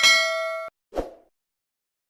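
Notification-bell 'ding' sound effect: a bright bell ringing with several pitches at once, cut off suddenly under a second in. About a second in, a short dull thud follows.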